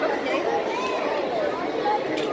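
Indistinct chatter of many people's voices overlapping in a large, crowded hall.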